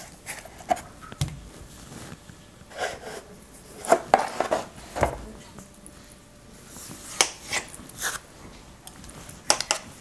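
A small kitchen knife cutting and sawing through wet floral foam, with scattered light knocks and scrapes as the foam pieces are handled and pressed into a plastic box.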